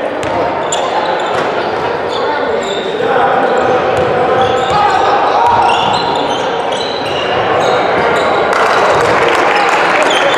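Basketball being dribbled on a hardwood gym floor, with short high squeaks typical of sneakers on the court and voices of players and spectators ringing in the large hall.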